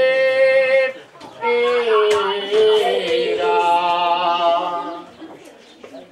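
Unaccompanied male voice singing an improvised ottava rima verse in long drawn-out notes. A held note ends about a second in, then a second slow phrase follows and fades near the end.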